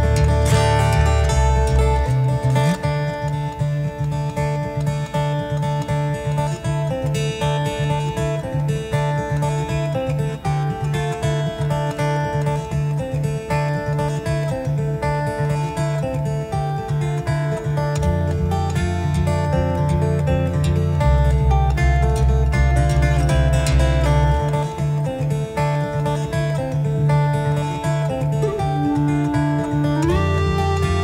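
Solo steel-string acoustic guitar played in percussive fingerstyle: a picked melody over low sustained bass notes, driven by a quick, steady rhythm of slaps and taps on the strings and body.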